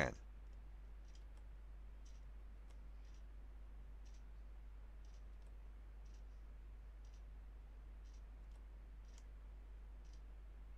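Faint, light clicks, about one or two a second and unevenly spaced, over a steady low electrical hum.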